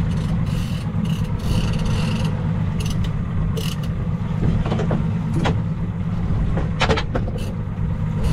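Steady low rumble of a boat's outboard motor running at idle, mixed with wind and water. Scattered sharp clicks and knocks come at irregular times, with a cluster near the end.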